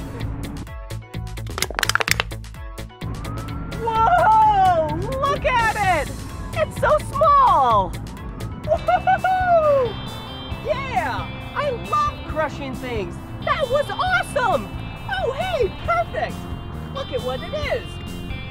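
An aluminium soda can crushed underfoot with a single sharp crunch about two seconds in, during a brief gap in the background music. After it come bouts of wordless vocal exclamations over the returning music.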